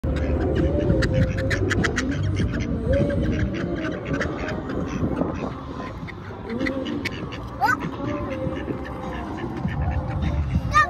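Mallard ducks quacking close by, the calls densest in the first two seconds, over voices in the background.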